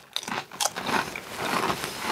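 Tortilla chips crunching as two people bite into them and chew, an irregular run of crisp crackles.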